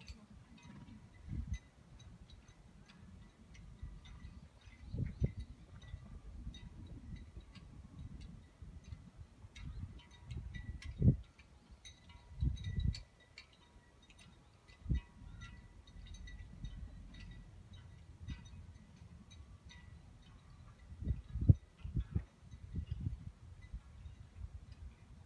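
Quiet outdoor ambience with irregular low rumbles of wind buffeting the microphone, the strongest about eleven seconds in and near the end, over faint scattered ticks.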